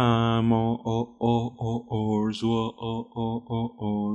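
A man's voice chanting on one low, steady note. It is held at first, then broken into short repeated syllables about three a second.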